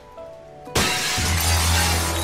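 Soft background music, then about three-quarters of a second in a loud crash of glass shattering that keeps rattling on, with a deep bass note of the score coming in under it.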